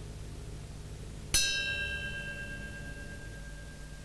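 Musical score: a single struck bell-like note about a second in, its bright overtones dying away quickly while one clear tone rings on, over a low steady drone.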